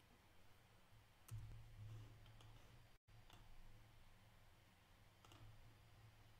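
Near silence: quiet room tone with a low hum and a few faint, scattered clicks, with a brief dropout in the audio about three seconds in.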